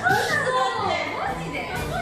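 Excited young voices talking over one another, over background music.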